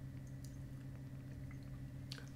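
Quiet room with a steady low electrical hum and a few faint wet mouth clicks from a tobacco bit being held and worked in the mouth.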